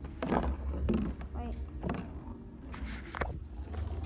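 A Beyblade spinning in a plastic stadium, with a few light knocks and scrapes of the top and plastic. A steady low hum runs underneath.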